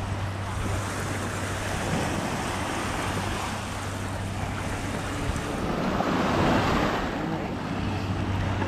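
Mediterranean surf washing onto a sandy beach, with wind buffeting the microphone. The wash swells louder for a moment about six to seven seconds in.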